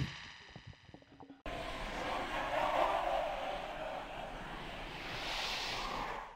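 A voice trailing off in a fading echo, then a steady hiss of electronic white noise that starts suddenly, grows brighter toward the end, and stops: a noise-sweep transition effect.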